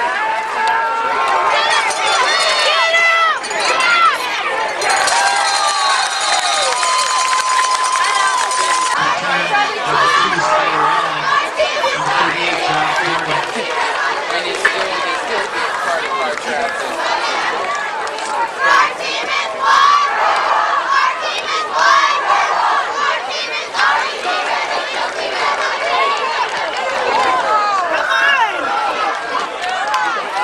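Football crowd in the stands, many voices cheering and shouting over one another.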